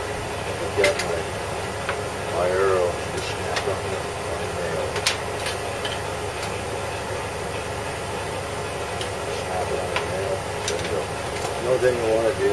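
Light clicks and taps of tools and an arrow being handled on a wooden workbench, over a steady background hum. A voice murmurs briefly twice.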